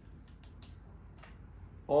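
A few faint, sharp clicks from a Canon EOS R6 Mark II mirrorless camera body being handled and switched on with a freshly charged battery fitted.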